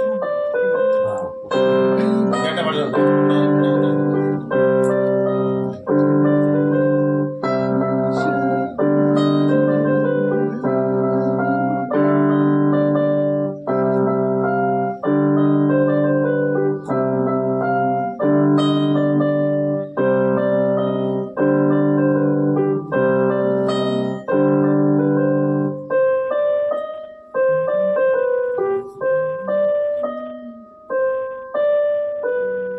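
Keyboard music: chords struck at a steady pace, a new chord about every second and a half. Near the end the low notes drop out, leaving a lighter upper line.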